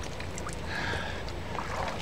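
Water splashing and dripping at a river's edge, with rustling and soft steps on the grassy bank, and a short high pitched sound near the middle.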